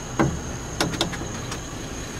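Plastic fuel filler door on a 2010 Chevy Traverse being pushed shut by hand: a short knock, then two sharp clicks a fraction of a second apart as it snaps into its latch.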